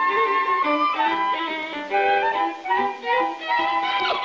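Orchestral cartoon score with violins carrying a melody of held, gliding notes over string accompaniment.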